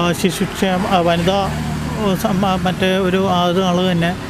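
A man talking steadily into a close microphone, with a low rumble of road traffic behind his voice.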